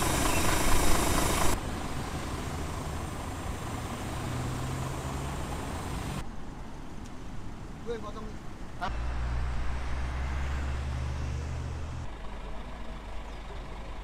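Steady low rumble of an idling vehicle engine with roadside traffic noise, the sound changing abruptly every few seconds between clips.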